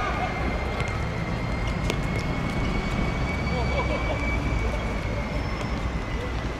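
Open-air ambience of a football game: steady traffic rumble from an elevated road, with distant voices of players calling now and then. A steady high-pitched whine runs underneath, and a single sharp knock comes about two seconds in.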